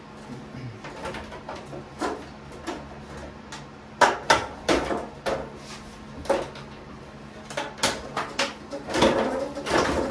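Plastic bonnet of a Kubota BX2370 compact tractor being worked onto the front of the tractor by hand: a string of plastic clicks, knocks and creaks, busier and louder in the second half.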